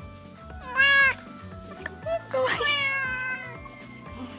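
Tabby house cat meowing twice: a short meow about a second in, then a longer, slowly falling meow around the middle.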